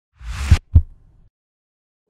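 Logo sting sound effect: a short whoosh that swells into a deep thump, followed a quarter-second later by a second deep thump, like a heartbeat.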